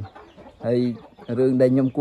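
Chickens clucking in the background while a man talks over them.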